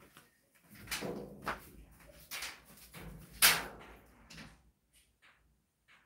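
Scrapes and knocks of a person moving about and leaving the room, an irregular string of short noises, loudest about three and a half seconds in and dying away by about four and a half seconds.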